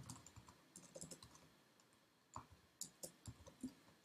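Faint computer keyboard typing: scattered single keystrokes with a pause of about a second in the middle.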